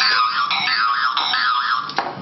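A novelty 'musical fist' toy playing a tinny electronic tune. It is a high warbling tone that wobbles up and down a few times a second, and it starts abruptly.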